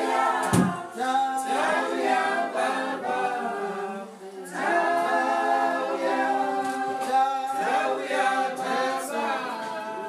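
Unaccompanied group of voices singing held, overlapping notes, with a sharply falling low slide about half a second in and a brief gap about four seconds in.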